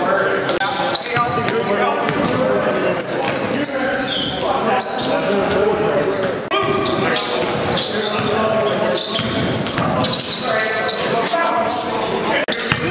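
A vocal track, a rapped voice running without pause, with a basketball bouncing on a gym floor.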